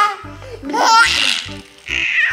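A baby laughing in high-pitched squeals, loudest about a second in.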